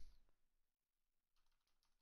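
Faint computer keyboard typing: a few soft keystrokes a little past the middle, otherwise near silence.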